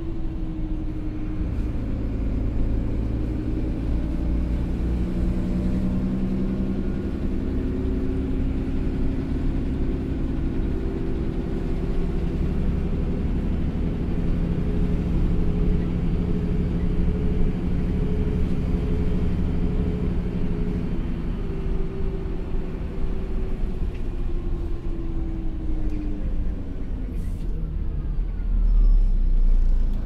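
Cabin sound of a Karosa B931E city bus under way: its diesel engine running over a steady road rumble, the engine note rising and falling in pitch as the bus pulls and changes speed. The engine note drops away in the last several seconds as the bus slows, with a louder low rumble near the end.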